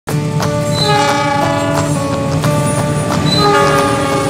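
Music with a regular beat and notes that change pitch every fraction of a second, starting abruptly.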